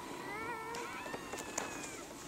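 A white-coated seal pup calling: one long, pitched cry that starts shortly in, wavers at first and then holds steadier until near the end.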